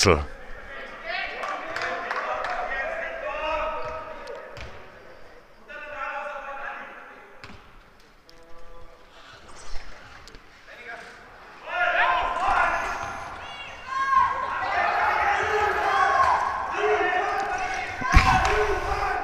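A basketball knocking on the hall floor and hoop during free-throw shots, with sharp knocks at about five and ten seconds in. Players' and spectators' voices call out throughout and grow louder in the second half.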